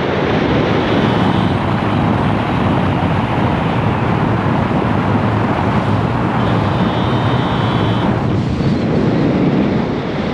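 Steady rush of wind and road noise from a moving vehicle. A faint high whine comes in briefly about a second in, and again from about six and a half to eight seconds.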